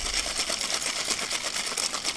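Ice rattling in a metal cocktail shaker shaken hard and fast, a rapid, even clatter.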